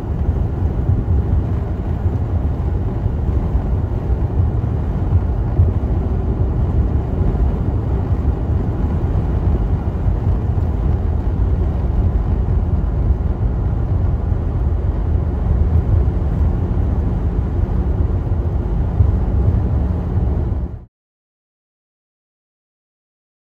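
Steady low rumble of a car travelling at highway speed, heard from inside the cabin: road and engine noise. It cuts off suddenly about a second before the end.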